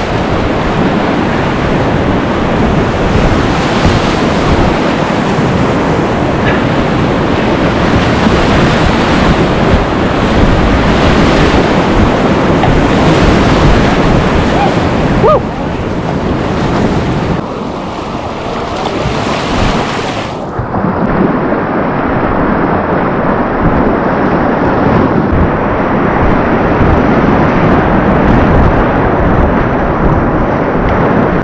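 Loud rush and splash of whitewater in a river rapid, right around a kayak running it. About two-thirds of the way through the sound turns duller as the high hiss drops away.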